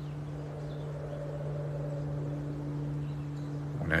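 A steady low hum of two constant tones that does not change.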